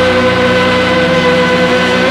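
A rock band's closing chord held and ringing out loud, with distorted guitars and keys sustaining one steady pitch and its overtones over a low rumble.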